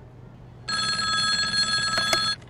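Landline telephone ringing: a steady electronic ring begins about two-thirds of a second in, after a moment of faint low hum.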